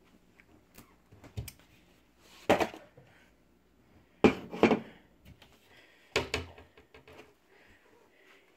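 A few sharp knocks and thuds as household things are handled while a ceramic coffee mug is fetched: two single knocks a couple of seconds apart, with a quick pair between them.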